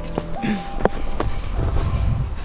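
A plastic sled scraping and knocking in deep powder snow as the rider shifts and climbs off; the sled is bogged down because the snow is too powdery. A low rumble on the microphone runs under it, with a couple of sharp knocks about a second in.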